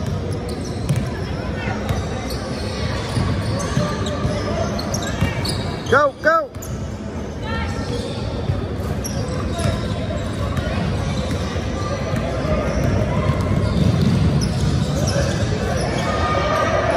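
A basketball dribbling and bouncing on a hardwood gym floor, with sneakers squeaking in short chirps about five seconds in and again around eight seconds, amid echoing voices in a large hall.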